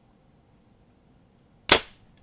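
A Bowtech Carbon Zion compound bow being shot: one sharp, loud crack near the end, dying away quickly.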